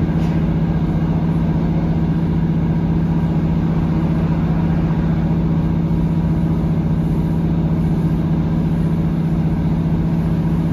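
Steady drone of a British Rail Class 150 Sprinter diesel multiple unit running at speed, heard from inside the carriage: a constant low engine note over continuous wheel and rail rumble.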